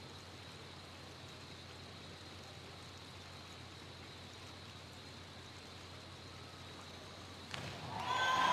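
Faint, steady hiss of a hushed indoor diving venue, with no distinct events. A louder noise rises just before the end.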